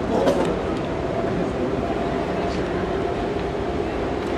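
Steady outdoor background rumble at a football pitch, with faint distant voices of players, and a brief sharp thud about a third of a second in.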